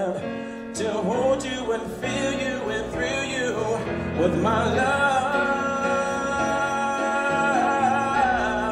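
A man singing into a microphone over instrumental accompaniment, holding one long note through the second half.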